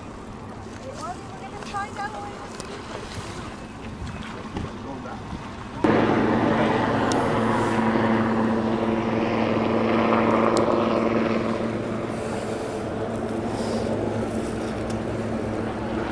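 A steady engine drone with a low hum cuts in suddenly about six seconds in and keeps on. Before it there is only a faint outdoor background.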